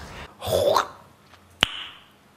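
A man's short wordless vocal sound, breathy and without words, then about a second and a half in a single sharp click followed by a brief high ringing tone.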